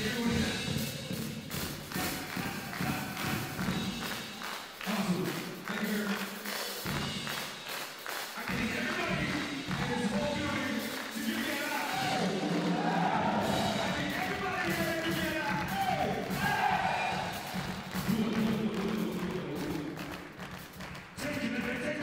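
Live drum kit playing a beat, with a rapper's amplified vocals over it, the voice coming through more strongly from about eight seconds in.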